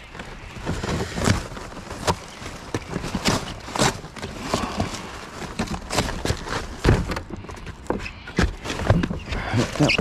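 Cardboard beer carton being pulled apart and flattened by gloved hands: irregular cardboard tearing and crackling with sharp knocks, mixed with rustling of rubbish in a plastic wheelie bin.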